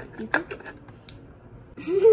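Small clicks and taps of fingers handling a cardboard toy advent calendar and its tiny packaged toys: one sharp click about a third of a second in, another around one second, and a few fainter ticks.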